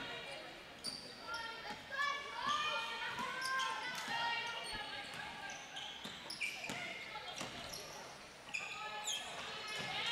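Basketball game sounds on a hardwood court: many short, high sneaker squeaks and a ball bouncing, faint and echoing in the hall.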